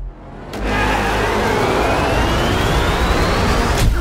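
Trailer sound-design riser: a loud rush of noise swells in about half a second in, carrying a thin whine that climbs steadily in pitch, then cuts off abruptly near the end.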